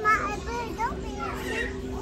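Young children's voices chattering and calling out, over a steady low hum.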